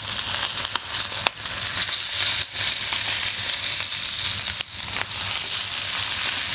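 New York strip steak sizzling steadily in a hot electric skillet, with a few sharp clicks of metal tongs against the meat and pan.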